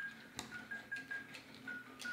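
Faint electronic beeping from a toy's sound chip: a quick series of short high beeps at nearly one pitch, about three or four a second, playing a little tune. A single click sounds about half a second in.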